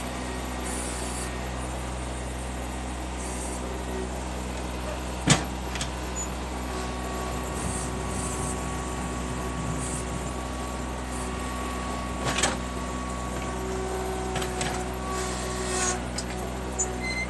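John Deere F935 front mower's diesel engine running steadily under load as the loader bucket pushes slush and snow, with a sharp clank about five seconds in and a smaller clatter near twelve seconds. A thin steady whine sits over the engine through the middle.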